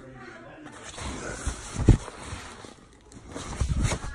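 Rustling and handling noise over a bunk's mattress and bedding, with one sharp thump about two seconds in and a few duller knocks near the end.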